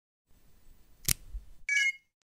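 Logo intro sound effect: a faint low hum, a sharp hit about a second in, then a short bright chime of a few ringing notes near the end.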